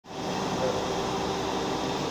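Steady whirring hum of a powered-up CNC vertical milling machine, its fans and motors running.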